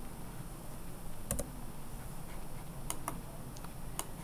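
A few sharp computer mouse clicks, one about a second in and a quick pair near three seconds, over a faint steady hum.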